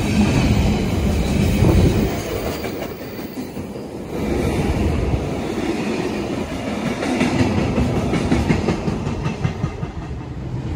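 Container freight train's wagons rolling past at speed, wheels clattering on the track with a continuous rumble; the noise dips for a moment about three seconds in and then picks up again.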